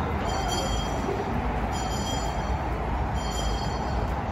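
A Salvation Army charity handbell being rung, a high metallic ring coming back about every one and a half seconds, over a steady outdoor background rumble.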